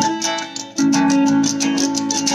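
Electric guitar strumming chords. The sound dips briefly about half a second in, then a new chord rings out under repeated strums: the opening of a song.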